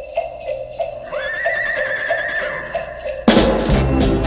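Sleigh bells jingling in a steady rhythm, with a horse's whinny sound effect lasting about a second, starting about a second in. A louder full band track cuts in suddenly near the end.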